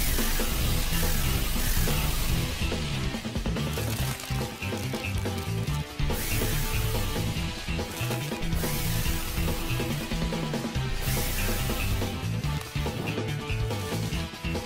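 Action score with a driving, repeating bass line. Over it come several hissing blasts of a carbon dioxide sprayer, each lasting a couple of seconds.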